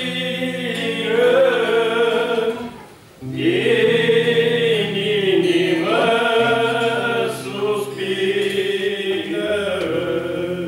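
Trio of men's voices singing a Romanian hymn together, holding long notes, with a brief break between phrases about three seconds in.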